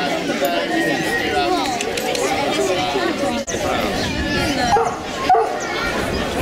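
Crowd chatter, with a pack of foxhounds barking and whining among the voices.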